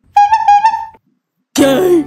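A short, high, flute-like note held for under a second with a few small wavers in pitch. It is followed near the end by a brief, louder sound whose pitch falls.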